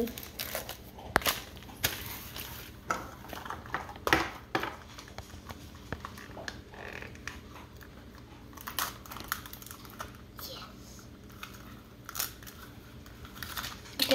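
Thin plastic wrapping crinkling and rustling as a small toy capsule and its bagged miniatures are unwrapped by hand, with scattered sharp clicks and taps of hard plastic.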